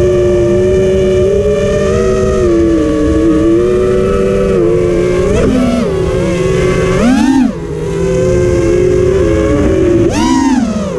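TBS Oblivion racing quadcopter's brushless motors and propellers whining, heard from the onboard camera, their pitch wavering with the throttle. About seven seconds in, a quick punch of throttle sends the whine sharply up and back down, followed by a short dip in loudness. Wind rushes steadily over the microphone underneath.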